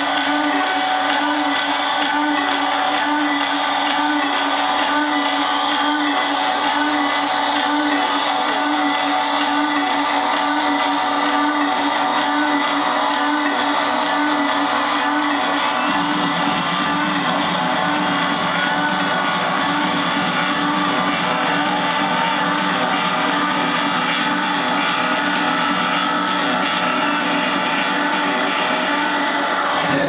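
Loud sustained droning sound over a club sound system, many held tones with no beat, machine-like; a deeper layer joins about halfway through, and it breaks off right at the end.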